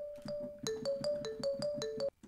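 Marimba preset on the Korg Triton software synthesizer playing a repeating pattern of short struck notes, alternating between two pitches about three or four notes a second, auditioned as a mallet layer for a beat.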